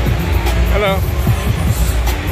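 Loud music with a heavy bass line playing through an exhibition hall's sound system over crowd chatter, with a brief voice about midway through.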